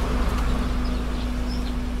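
Outdoor street ambience: a steady low rumble under a constant hum, with a couple of faint high chirps near the end.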